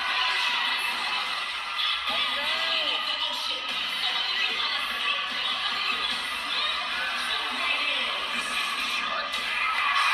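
Cheerleading routine music mixed with a crowd cheering and shouting, played back through speakers and picked up by a room microphone. It runs as a dense, steady wash with faint shouts in it.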